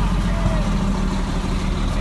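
A vehicle engine idling, a steady low rumble, with a faint voice briefly in the background.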